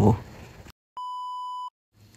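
A single steady electronic beep, about three-quarters of a second long, set between stretches of dead silence: a bleep sound effect added in editing.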